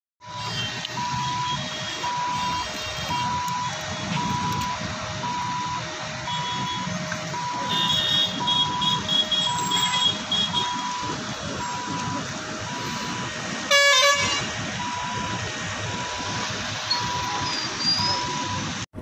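Road traffic at a busy junction with vehicle horns honking, among them a loud horn blast about 14 seconds in. Under it, a hi-lo two-tone warning alternates steadily, about one high-low cycle a second.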